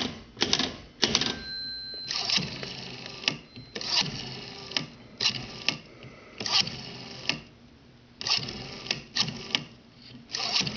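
The rotary dial of a Western Electric 554 wall phone being dialed, digit after digit: each pull and return of the dial makes a short burst of mechanical clicking and whirring, about one burst a second.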